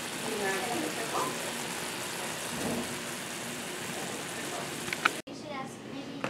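Beefsteak polypore slices frying in butter in a cast-iron skillet: a steady sizzle, with faint voices in the background. It cuts off suddenly about five seconds in.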